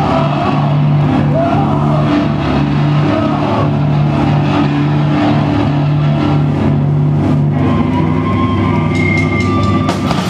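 Punk band playing live: loud distorted guitar and bass holding a slow riff of long low notes over drums and cymbals. A thin ringing tone comes in near the end.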